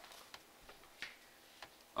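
A few faint, irregularly spaced clicks over quiet room tone.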